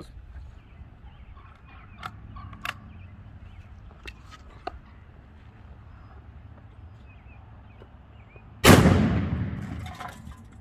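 A 12-gauge shotgun fires a single one-ounce Remington deer slug near the end: one loud report that rings out and dies away over about a second. Before it, a few faint clicks.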